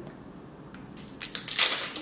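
Quiet handling, then, in the second half, a quick run of crackles and clicks as a perfume mist's packaging is torn and peeled open.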